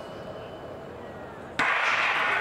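Hushed stadium while sprinters hold the set position, then the starter's gun fires about one and a half seconds in and the crowd breaks into loud cheering.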